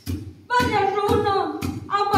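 Singing of a Sumi Naga folk song, starting about half a second in after a brief pause, over the regular thuds of two long wooden pestles pounding in turn into a wooden mortar, about two strokes a second.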